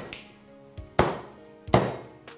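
Kitchen cleaver chopping through a whole fried chicken onto a cutting board: three sharp chops, at the start, about a second in and near the end, the last the loudest. Background music plays underneath.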